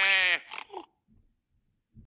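A long, drawn-out farm-animal call that ends about half a second in. A couple of short faint sounds follow, then near silence.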